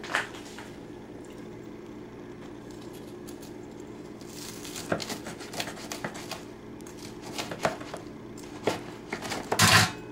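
Large kitchen knife cutting through a crispy, oven-toasted grilled cheese sandwich on a countertop: a short click at the start, then an irregular string of crunches and taps in the second half, the loudest near the end.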